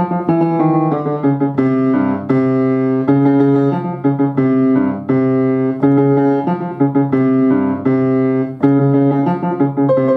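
Upright piano played four hands, two players at one keyboard, in a brisk stream of short chords and notes.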